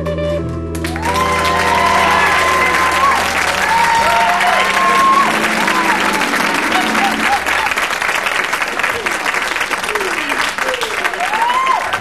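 Studio audience applauding and cheering, with whoops rising and falling over the clapping. Under it the live band's guitar and bass notes ring out and fade away around the middle.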